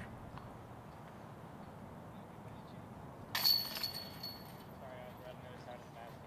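A disc hitting a metal disc golf basket about three and a half seconds in: a sharp metallic clank and jingle of chains that rings on at a high pitch for about a second, against quiet outdoor background.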